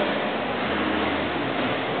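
Steady outdoor background noise with a faint low hum running under it.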